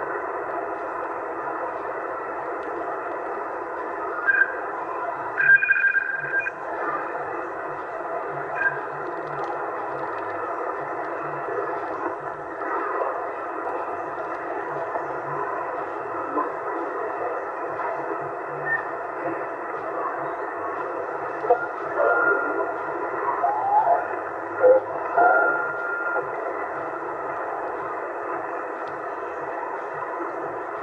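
Steady receiver static from a Yaesu FT-450AT HF transceiver in USB mode as its VFO is tuned down through the 27 MHz CB band. Brief whistles and snatches of distorted signals pass through about five seconds in and again between about 21 and 26 seconds.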